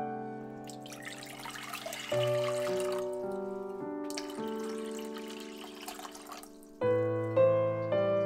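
Water poured in a stream into an empty cooking pot, in two pours of about two seconds each, over soft piano background music.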